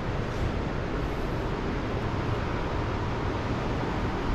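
Steady, even background noise with a low rumble and no distinct events: the ambience of a large, hard-surfaced hall.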